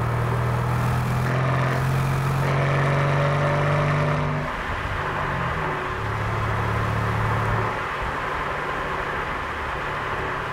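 Mercedes-AMG C63 S twin-turbo V8 with an Akrapovič exhaust, heard from inside the cabin under acceleration, its note rising slightly for about four seconds before the throttle lifts. It pulls again briefly with a steady note, then drops back to a quieter cruising drone about three seconds from the end.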